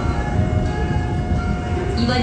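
Subway train running, heard from inside the carriage: a steady low rumble with a faint, even motor hum.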